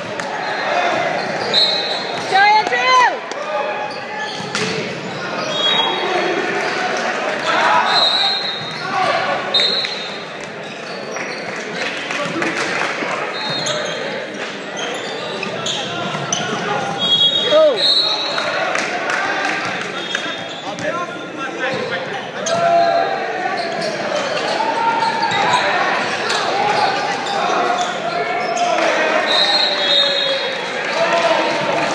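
Indoor volleyball play in a school gym: the ball being struck, short high squeaks, and players and spectators calling and shouting, all echoing in the hall.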